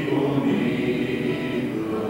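A congregation singing a slow worship song together, holding long notes, with acoustic guitar accompaniment.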